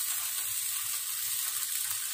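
Marinated meat sizzling on an electric tabletop grill, a steady even hiss.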